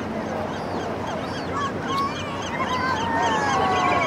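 Birds calling: a rapid series of short, high chirping calls, about three a second, joined from about a second and a half in by longer drawn-out calls that slide slowly in pitch.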